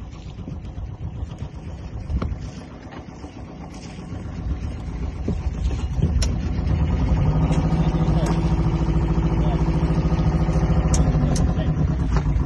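A small fishing boat's engine coming up about five seconds in and then running steadily with an even hum, with a few sharp knocks over it.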